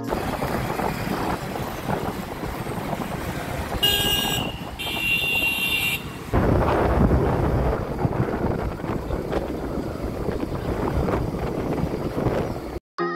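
Traffic noise and wind buffeting the microphone on a motorbike ride, with a vehicle horn sounding twice about four and five seconds in. The low wind rumble gets heavier from about six seconds on.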